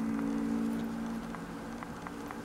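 Satin ribbon being wrapped and folded around a rubber flip-flop strap by hand, with faint irregular ticks of handling, over a steady low hum.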